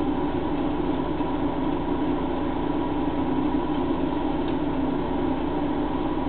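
A steady mechanical hum that holds an even level throughout.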